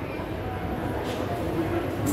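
Room noise in an exhibition hall: a steady low rumble with faint voices of other people in the background.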